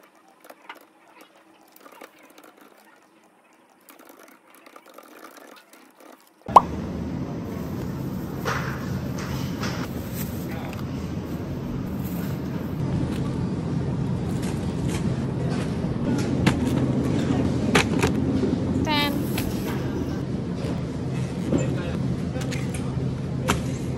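Faint clicks of a computer mouse and desk handling in a quiet office, then a sharp click about six seconds in and supermarket ambience: a steady low hum with background voices, the rustle of plastic produce bags and the small rattles of a wire shopping cart. A brief rising run of beeps sounds near the end.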